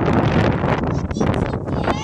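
Wind buffeting a phone's microphone, a loud, steady rumble with frequent crackles.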